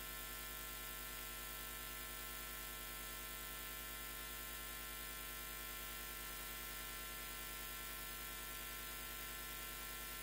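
Steady electrical hum with a layer of hiss, unchanging throughout, with no speech.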